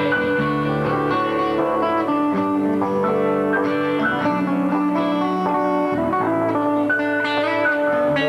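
Band music led by guitar, with held bass notes that change every second or so.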